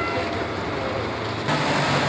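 The tail of a train horn dies away, then busy station and street noise runs on. About three-quarters of the way in, a vehicle engine's low hum and traffic noise come in.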